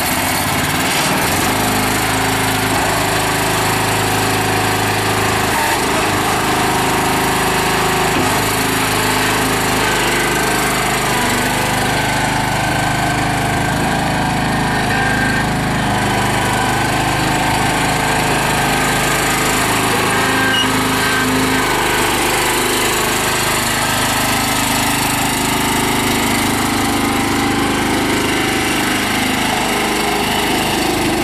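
Honda GX390 13 hp single-cylinder gasoline engine on a Miller MB16 concrete power buggy, freshly started and running steadily while the buggy is driven. Its pitch shifts a little now and then.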